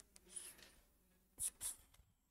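Pen stylus writing on a tablet screen, faint: a soft scratch about half a second in, then two short, sharper strokes close together near the end.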